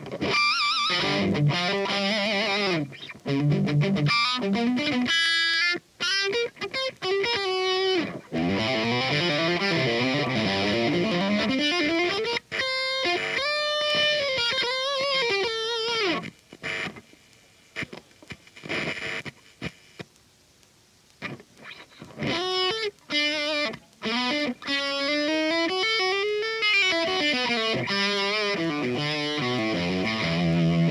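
Electric guitar played through a Laney Cub valve amp head: single-note lead lines with string bends and vibrato. The playing thins to a few scattered notes in the middle, then picks up again before stopping.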